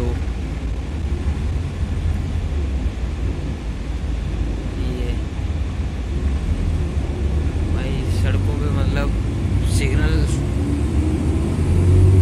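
Steady low engine and road rumble heard inside a moving coach bus, with brief voices partway through.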